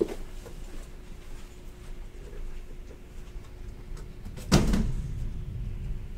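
Trading card boxes being handled on a table: a short click at the start, a few faint taps, and a louder thump about four and a half seconds in as a box is set down, over a faint steady hum.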